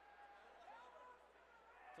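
Near silence: faint hall ambience with faint distant voices from the crowd.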